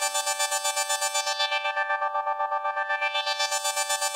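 Synthesizer holding a chord with a fast, even pulsing and no bass or drums, an electronic keyboard passage in a cumbia recording.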